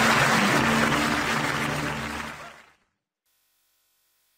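Closing theme music with studio audience applause, fading out and ending about two and a half seconds in, followed by silence.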